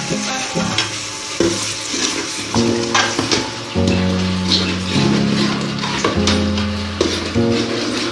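Background music with long held notes over a spoon stirring and clicking in an aluminium pot of sizzling spinach masala.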